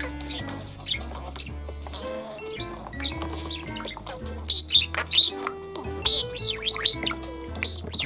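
Background music with held notes and a steady bass, over which a lutino budgerigar chirps and chatters in quick high warbles, busiest in the second half.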